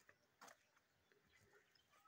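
Near silence: faint outdoor background with a soft, brief noise about half a second in.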